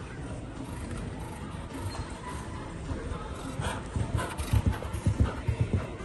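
Hooves of a cantering grey show-jumping horse thudding on the sand arena surface. They grow louder and closer in the second half, a quick uneven run of thuds in the canter's rhythm.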